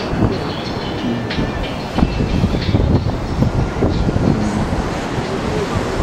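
Strong sea wind buffeting the microphone: a loud, gusty, rumbling rush, with surf on the beach behind it.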